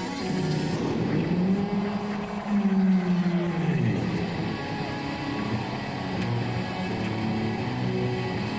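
Distorted electric guitar, a Les Paul-type, played solo through stage amplifiers: long sustained notes bent in pitch, with one sliding down at about four seconds.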